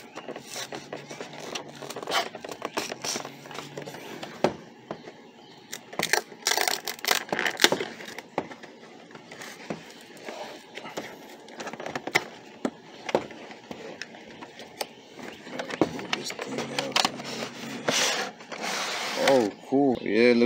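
A cardboard collection box and its clear plastic tray being handled and opened: irregular scrapes, clicks and rustles of packaging, with louder rustling bursts about six to eight seconds in and again near the end.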